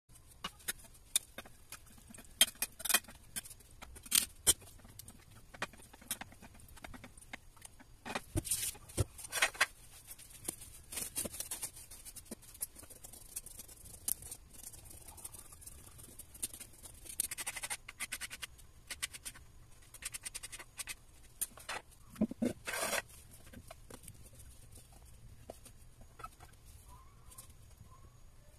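Kitchen handling sounds during food preparation: scattered sharp clicks and taps of items on the counter, with a few short bursts of rustling about 8, 17 and 22 seconds in.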